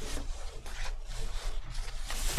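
A large sheet of painting paper being handled and folded by hand: a series of paper rustles as it is pressed, lifted and creased.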